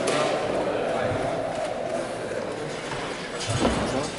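Gym background sound of indistinct voices, with a sharp knock at the start and a heavier thud about three and a half seconds in.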